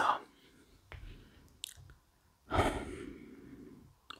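A man's long sigh, breathed out close to the microphone about two and a half seconds in and fading away over about a second.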